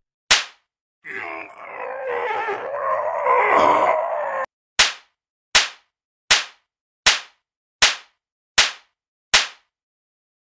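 Sound-effect edit: one sharp smack, then a loud, harsh, distorted scream that grows louder for about three and a half seconds and cuts off abruptly, then the same sharp smack repeated eight times, evenly spaced about three-quarters of a second apart.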